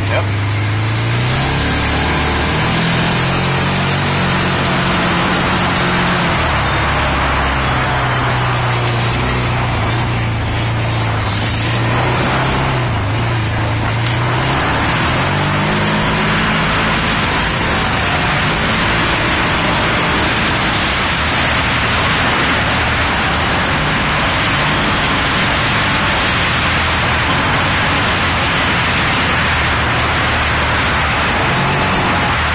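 Side-by-side utility vehicle's engine running under way, its pitch rising and falling with the throttle, over a steady hiss.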